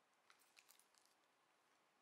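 Near silence, with a few faint, quick clicks within the first second: soft mouth sounds of chewing a coffee-and-rum-soaked ladyfinger.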